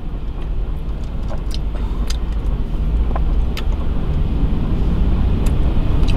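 Low steady rumble inside a car's cabin, growing slightly louder, with a few faint scattered clicks.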